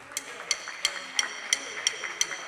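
A drum-kit cymbal tapped in a steady beat, a bright metallic tick about three times a second, with a soft keyboard note held briefly about a second in.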